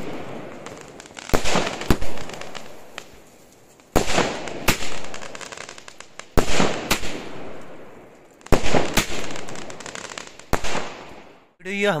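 Aerial fireworks bursting, mostly as pairs of sharp bangs about half a second apart, every two to two and a half seconds. Each pair trails off in a fading crackle of falling stars.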